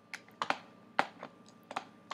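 About seven irregular, sharp clicks from a computer keyboard and mouse being worked.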